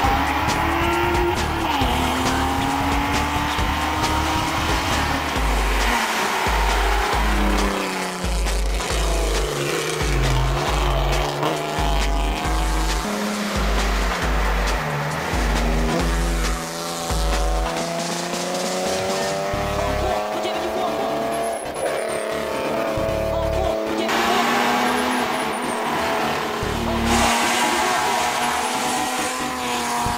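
BMW E36 race car's engine revving hard and climbing through the gears, its pitch rising and dropping back at each shift several times, with tyres squealing through a corner. Background music with a steady bass beat plays under it.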